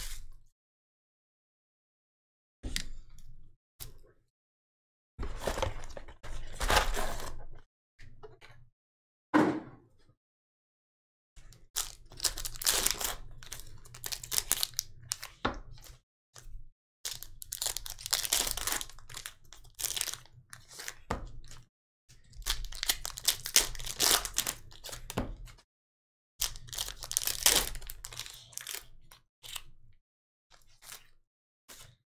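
Foil-wrapped trading card packs being handled and torn open, crinkling and crackling in irregular bursts separated by spells of dead silence.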